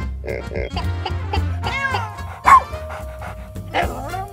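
Cartoon soundtrack: background music under the squeaky, pitch-bending voices of cartoon animals, a dog among them, with one short, loud sound about two and a half seconds in.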